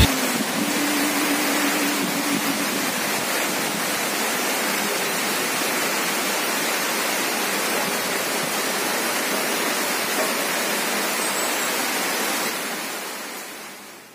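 Steady heavy rain, an even hiss that fades out over the last second and a half.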